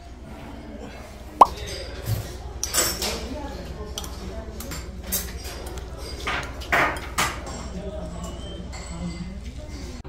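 Restaurant table sounds over a steady low hum and faint background voices. There is a sharp click about a second and a half in, then short clatters of chopsticks against a ceramic noodle bowl as jjajangmyeon is mixed.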